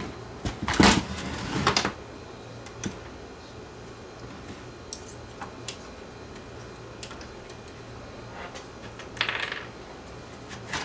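Metal clatter from handling a Yamaha KX670 cassette deck's sheet-metal chassis and front panel: a cluster of knocks and rattles in the first two seconds, then a few faint clicks, and a short rustling scrape near the end.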